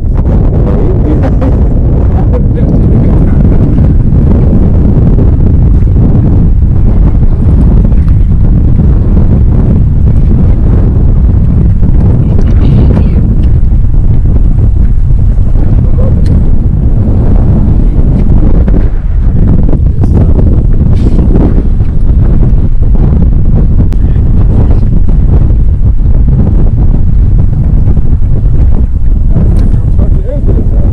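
Wind buffeting the microphone over open water: a loud, steady low rumble.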